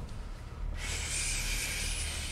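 Low road and engine rumble inside a moving BMW 1 Series' cabin. A loud, steady hiss starts abruptly about a second in and holds.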